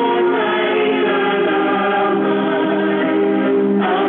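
A group of voices singing a gospel hymn together at a prayer meeting, holding long, steady notes. The recording is dull and thin, with nothing above the upper mid-range.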